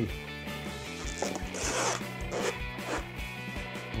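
Background music with a steady beat. About a second in, a short crinkling rustle of plastic cling film being handled and pulled from its roll lasts under a second.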